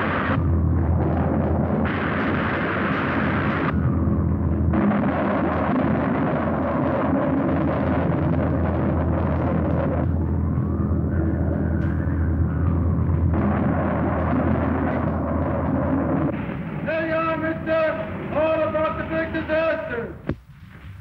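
Film sound effects of a storm and a crashing airship: a steady roar of wind and deep rumble as the broken dirigible falls, changing abruptly at edits. A whistling tone rises and falls about halfway through.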